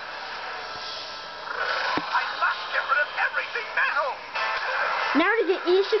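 Cartoon soundtrack played from a television speaker: background music, with a character's voice starting about five seconds in.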